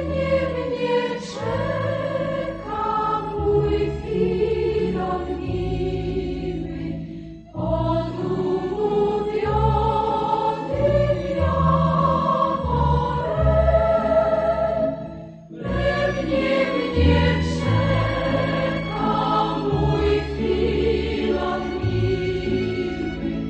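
A choir singing as background music, in phrases of about eight seconds with short breaks between them.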